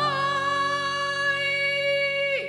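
A male singer in the female soprano range holds one long, high operatic note, reached by a quick slide up right at the start, over a sustained low accompaniment.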